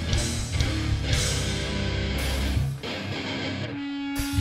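Live band playing a heavy riff on distorted electric guitar, bass and drums; the riff dips once and then nearly stops just before the end, leaving a single held note.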